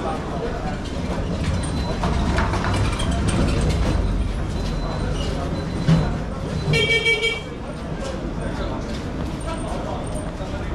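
Street traffic with a steady low engine rumble and voices in the background; a vehicle horn toots once, briefly, about seven seconds in, just after a short sharp knock.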